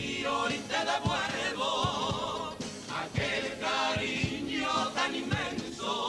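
Carnival comparsa chorus singing together in harmony, with a drum marking the beat underneath.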